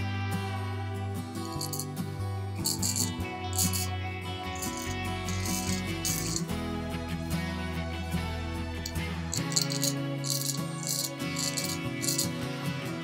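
Background music with guitar, over which a Diane D73 straight razor rasps through lathered stubble in short scraping strokes: a run of strokes in the first half and another toward the end.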